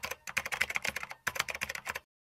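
Computer keyboard typing sound effect: a rapid, uneven run of key clicks with a brief break a little past halfway, cutting off suddenly at the end.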